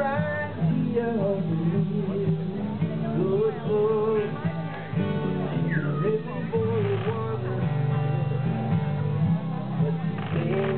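Live acoustic band playing a song: two acoustic guitars strummed and picked over an electric bass guitar.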